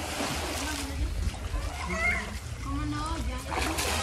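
Pool water splashing as a person wading through it kicks and throws up spray, with people's voices, children's among them, going on in the background.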